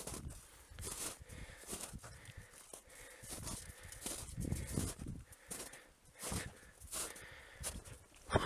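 Footsteps crunching through snow at walking pace, about one step every three-quarters of a second, with wind buffeting the microphone.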